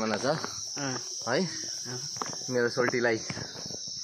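A steady, high-pitched drone of insects running without a break under men's voices talking.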